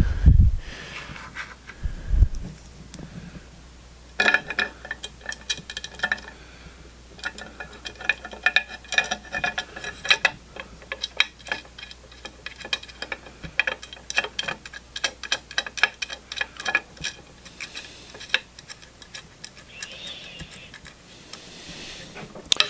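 Runs of quick metallic ticks and clicks as screws are driven to fasten an aluminum bearing block to its plate, after a couple of low bumps from handling the parts.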